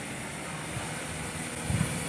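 Steady street background hum, the low rumble of distant traffic, with a brief low bump near the end.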